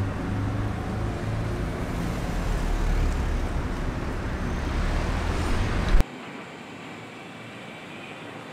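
Street traffic with a vehicle engine rumbling close by, which cuts off abruptly about six seconds in to a much quieter steady background hiss.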